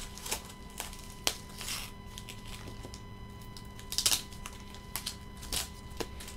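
Scattered clicks, taps and paper rustles of hands handling mail packaging and a hard plastic graded-card case on a tabletop, with a cluster of sharper rustles about four seconds in.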